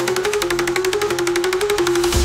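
Dark techno in a breakdown: the kick and bass drop out, leaving a held synth note under a fast, even roll of percussion hits, about fifteen a second.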